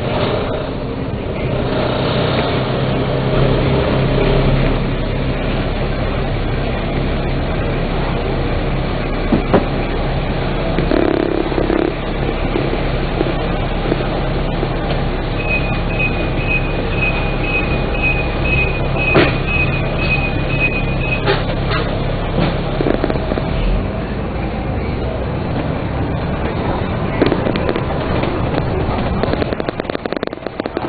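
Dennis Trident double-decker bus heard from on board: a steady engine drone with knocks and rattles as the bus comes in to a stop. About halfway through there is a run of about ten short, evenly spaced high beeps, and the engine note drops away near the end.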